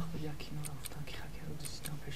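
Low, murmured speech and whispering of people conferring quietly.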